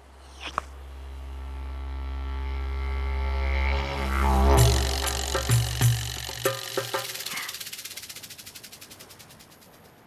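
Cartoon sound effect: a low, buzzing drone swells steadily louder for about four seconds and breaks into a crash. A few sharp knocks follow, then a fast pulsing wobble that dies away.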